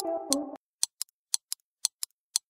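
Electronic beat: sustained synth chords cut off abruptly about half a second in, leaving only short, crisp percussion ticks, about two to three a second in an uneven pattern, over dead silence.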